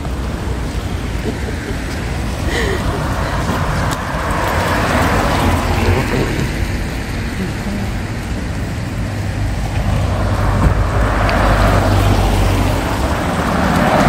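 Road traffic: cars passing close by, their tyre and engine noise swelling and fading twice, once about four seconds in and again from about ten seconds, over a steady low rumble.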